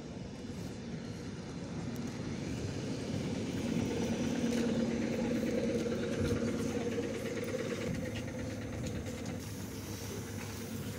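ED9M electric multiple unit humming steadily at the platform. The hum grows louder over the first few seconds and eases toward the end, over general platform noise.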